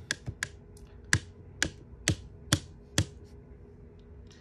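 A handheld pen making a series of sharp clicks, about two a second, ending about a second before the end.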